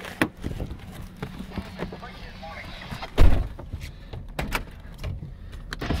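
A pickup truck's electric window motor running: a loud, annoying rattling and clicking over the truck's low rumble, with one heavy thump about three seconds in.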